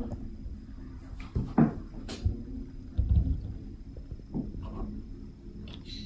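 Apples and oranges being picked up and set down on a tabletop: a handful of short knocks, the heaviest about three seconds in.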